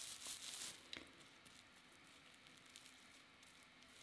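Faint crinkling of plastic cling film as it is pressed and smoothed over the eyebrows during the first second, with a small click about a second in.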